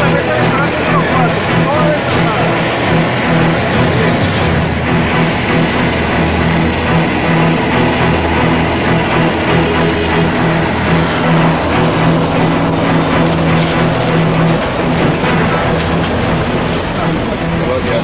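Road traffic heard from inside a moving car: a steady, loud mix of engine and tyre noise with a low drone from the truck close ahead.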